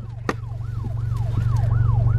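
An emergency vehicle siren in a fast yelp, its pitch sweeping down and back up about three times a second, over a steady low rumble inside the car. There is a single sharp click from the plastic food container shortly after the start.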